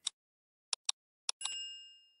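Sound effects of a subscribe-button animation: a few short, sharp mouse-click sounds, then a bright notification ding that rings and fades over about half a second.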